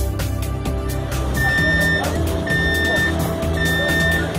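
Background music with a steady beat. From about a second and a half in, a high electronic beep sounds three times, about once a second, over the music.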